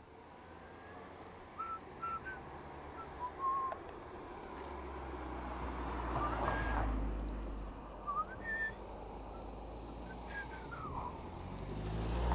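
A few short, faint high whistled notes at scattered moments, over a low rumble that swells and fades in the middle.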